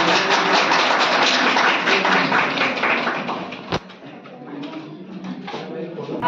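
An audience applauding, a dense patter of handclaps that thins out and dies away after about three and a half seconds, followed by a single sharp click and quieter murmur.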